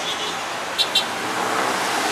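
Road traffic passing on a multi-lane city road: a steady rush of cars and vans, swelling a little as a vehicle goes by. Two brief high-pitched chirps sound just under a second in.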